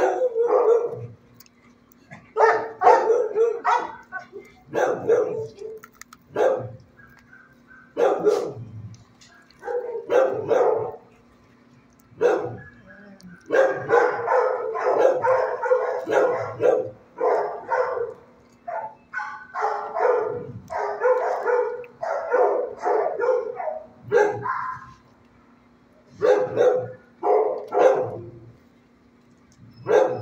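Dogs barking in a shelter kennel, in repeated groups of barks with short pauses between them, nearly unbroken through the middle stretch.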